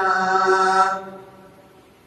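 A male reciter's voice singing a manqabat holds a long steady note that fades out about a second in, followed by a quiet pause before the next line.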